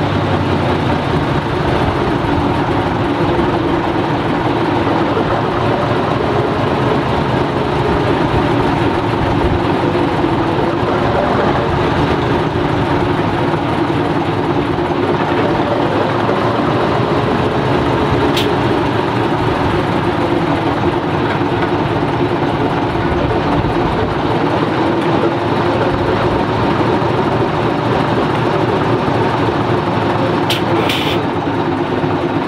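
Diesel engine of a 153 hp Walker rail motor power unit running steadily, its note wavering slightly up and down.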